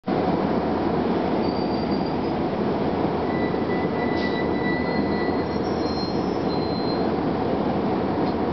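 Interior ride noise of a 1999 Gillig Phantom transit bus under way, its Detroit Diesel Series 50 four-cylinder diesel and Allison B400R automatic transmission running steadily under road noise, heard inside the passenger cabin. Thin high whines come and go over the steady noise.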